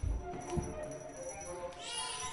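Improvised cello playing in short pitched notes, with heavy thuds from a dancer's feet on a wooden floor at the start and again about half a second in. A higher, brighter sound comes in near the end.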